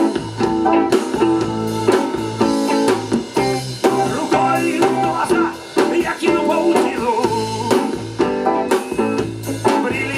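Live band music: an electric bass and guitar with a drum kit keeping a steady beat, and a man singing.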